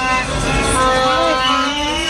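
Street noise of arriving vehicles with long, steady horn or whistle tones held over it and voices mixed in.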